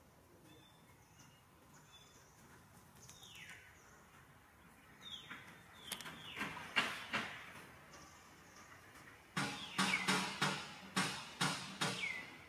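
High-pitched animal squeals, each falling in pitch. A few come singly and spaced apart, then a rapid run of louder calls follows near the end.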